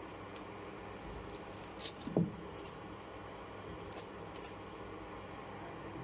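A kitchen knife slicing through a bunch of garlic chives onto a wooden chopping board: a few scattered crisp cuts, mostly around two and four seconds in, over low room noise.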